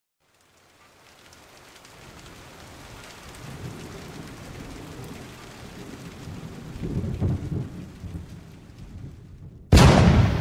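Thunderstorm sound effect: a steady hiss of rain fades in, a low rumble of thunder swells about seven seconds in, and a sudden loud thunderclap strikes near the end.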